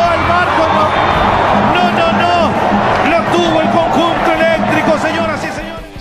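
A football commentator's voice calling a goal excitedly over background music, with crowd noise underneath.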